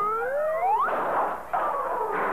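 Cartoon soundtrack effects: a whistle-like tone slides up in pitch for about a second, then a noisy crash-like burst follows, breaking off briefly before the music picks up again.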